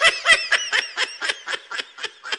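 High-pitched laughter in quick repeated bursts, about four a second, loudest at the start and tapering off.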